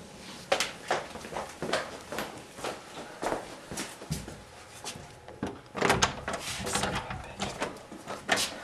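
Irregular knocks and clatters of things being handled and moved about in a small room, a few a second, louder around six seconds in.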